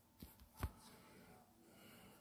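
Near-silent room tone with two short clicks, the second and louder one about two-thirds of a second in.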